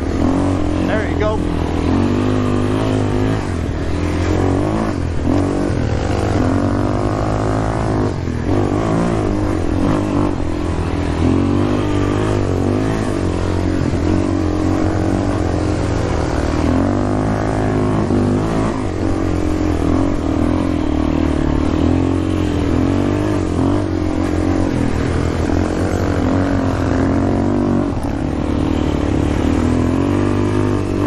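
Yamaha Warrior 350 ATV's single-cylinder four-stroke engine revving up and down again and again as the quad is ridden hard through turns.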